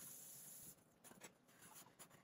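Faint kitchen tap running into a stainless steel sink, shut off under a second in, followed by a few light taps and clicks in the sink.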